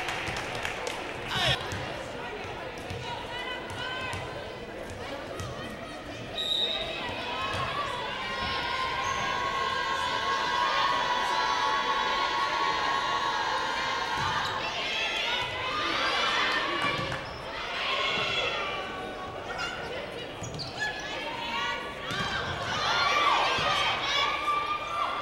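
Volleyball arena ambience during and just after a timeout: crowd chatter and a volleyball thumping on the hardwood court, with a steady held tone for several seconds near the middle. Voices rise near the end as play resumes.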